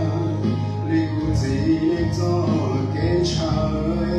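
A man singing a Hmong song into a microphone over accompanying music, with a low bass line whose held notes change about a second in and again near the end.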